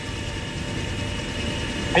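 Steady helicopter cabin noise heard from inside the cockpit: an even engine-and-rotor drone with a faint high steady tone over it.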